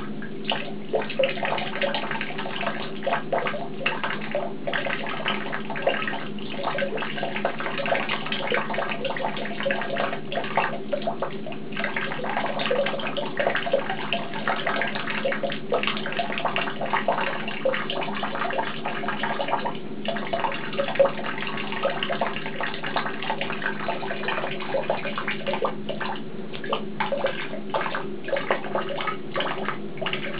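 Tap water running steadily and splashing into a basin of water, with many small splashes. A cat is pawing at the falling stream to drink from it.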